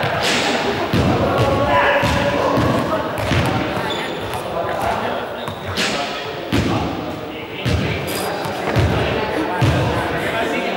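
Indistinct voices echoing in a large sports hall, with a few sharp thuds of balls scattered through.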